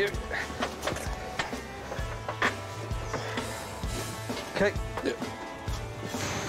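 Background music with held bass notes, over a handful of sharp knocks and cracks from wrought iron arch sections being dragged out of brambles.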